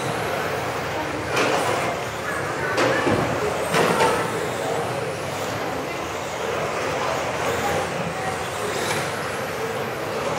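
Several 1:10 RC touring cars racing on a carpet track in a large hall: thin motor whines rise and fall as the cars pass, over a steady tyre noise, with a few sharp knocks in the first four seconds.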